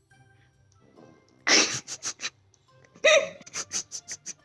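Small white puppy letting out short, sharp vocal bursts: two loud ones about a second and a half apart, each followed by a quick run of smaller ones.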